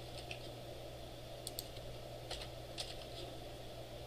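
Computer keyboard being typed on: sparse, irregular key clicks, a few a second, over a steady low hum.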